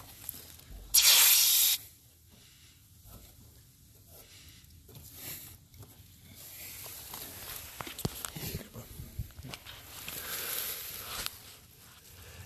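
Refrigerant hissing briefly out of the low-side service port as the oil pump's hose fitting is threaded on, about a second in. Faint clicks of the fitting and hose being handled follow.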